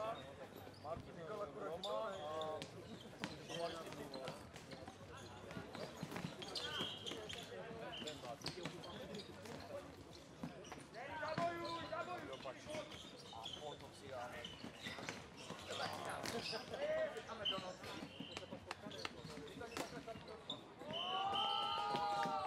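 Floorball play: players calling out to one another over repeated sharp clacks of sticks and the plastic ball on the court.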